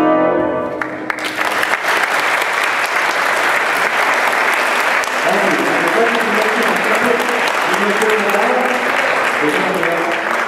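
A school jazz band's final held chord, with brass, ends about a second in, and audience applause follows, with some voices among the clapping.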